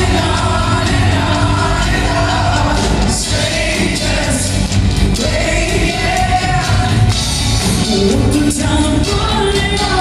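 Live rock band with orchestra and choir, several vocalists singing together over electric guitar and drums, heard through a cell phone's microphone from the audience.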